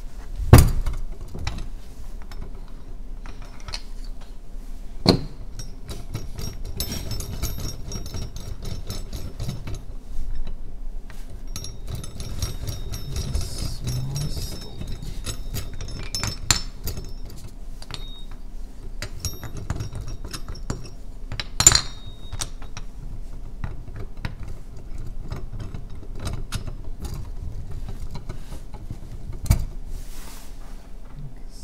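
Handling noise from a round brass seal-carving vise with wooden jaws: a stone seal being set between the jaws and the thumbscrews turned to clamp it, with small rattles and clicks throughout. A few sharp knocks stand out, the loudest about half a second in, others near 5 s, near 22 s and near the end.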